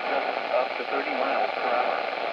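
A NOAA weather radio's speaker on a weak channel: steady static with a faint weather-report voice barely coming through. The reception is poor because the transmitter is far away.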